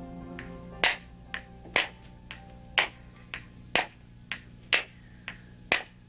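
Wooden balero (cup-and-ball toy) being played: the ball knocks sharply against the wooden stick about twice a second, alternating a louder and a softer click. Faint background music fades out in the first second.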